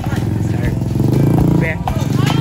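Small motorcycle engine running close, loudest about a second in and dropping away near the end, with children's voices.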